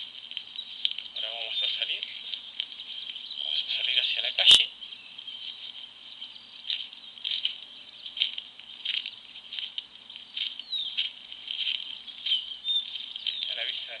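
Footsteps crunching on a dirt road under a steady hiss, with a few short bird chirps. One sharp click comes about four and a half seconds in.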